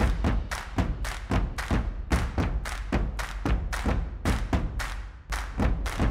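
Show intro theme music built on a fast pulse of heavy percussive thumps, about four a second, over a steady deep bass.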